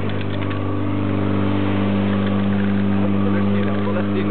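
Portable fire pump's engine running steadily at high revs with a constant hum, pumping water through the hose lines, swelling slightly midway.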